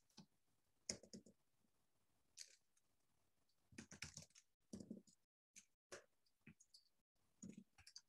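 Faint, scattered computer keyboard and mouse clicks, a few at a time, as a file name is typed and edited.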